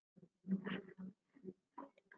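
A few faint, short voice-like sounds, four or five brief pitched bursts.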